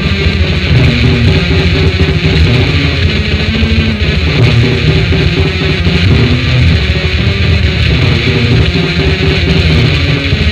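Raw black metal from a cassette demo recording: distorted electric guitars over a dense low end, unbroken throughout.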